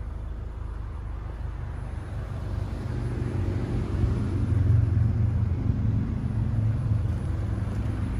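Skoda Octavia estate's engine idling steadily, growing louder about three seconds in.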